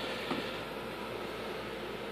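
Steady low hum with a faint, even hiss and no distinct event.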